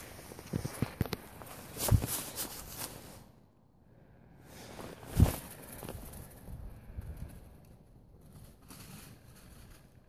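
Footsteps and rustling on grass with a few soft knocks, and a quiet gap, then one louder thump about five seconds in.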